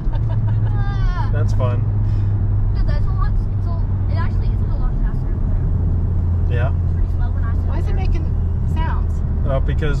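Steady low drone of a Honda Civic Type R's four-cylinder engine and tyres heard inside the cabin while the car slows on the road. Short bits of voice come over it now and then.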